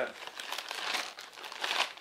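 A clear plastic bag of mounting hardware crinkling and rustling in the hands as it is handled.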